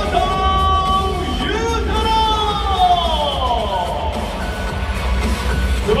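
Stadium PA music for a player introduction, loud and bass-heavy, with a long downward-gliding synth sweep from about two to four seconds in. A male announcer's voice starts just at the end.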